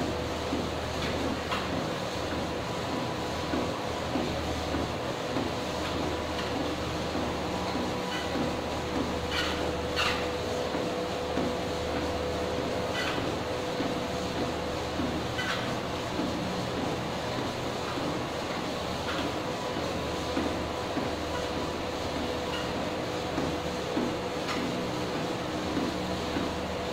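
Treadmill running with a steady whine and low hum, under the regular thud of walking footsteps on the moving belt, and a few faint clicks.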